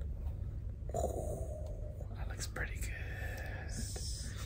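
Quiet murmuring and whispered voices, with a few faint clicks of a cardboard pizza box being handled, over a low steady room hum.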